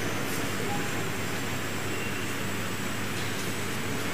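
Steady, even background noise of a large hall full of people, with a faint low hum and no distinct voices or events.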